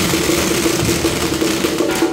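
Procession percussion: a dense, continuous wash of crashing cymbals with drum beats beneath and a steady held note throughout. The cymbal wash stops just before the end.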